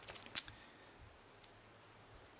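A few light clicks and crinkles of plastic shrink-wrap as a DVD case is handled, the sharpest a single click about half a second in, then quiet room tone.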